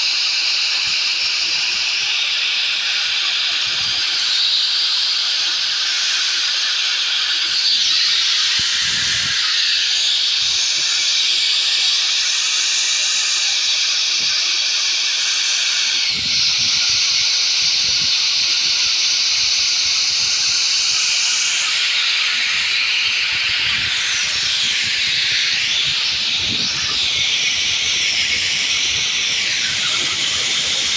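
Oxygen gas venting from the pipework of an oxygen storage tank: a loud, steady hiss as pressure is released after an oxygen leak. A faint wavering whistle rides on the hiss in the later part.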